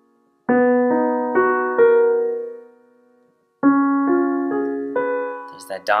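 Piano playing two seventh chords in the key of F# major, one about half a second in and another about three and a half seconds in, each built up with notes entering one after another and then left to ring and fade.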